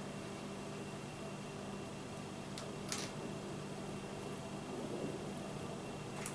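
Steady low room hum, with two short faint scratchy ticks about two and a half to three seconds in, from a plastic wire nut being twisted onto a pair of yellow wires.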